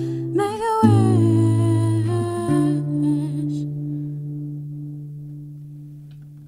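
Closing phrase of a song: a wordless sung or hummed vocal line over held accompaniment chords. The voice stops about three and a half seconds in, and the last chord rings on, fading away.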